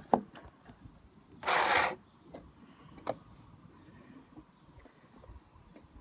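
Handling noise from the hand-held camera: a sharp knock at the start, a loud rustling rub against the microphone about one and a half seconds in, and a light tap a second or so later.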